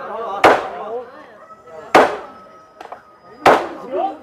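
Sharp knocks of blows struck on the wooden frame of a house being taken apart, three in a row about a second and a half apart, with people talking in the background.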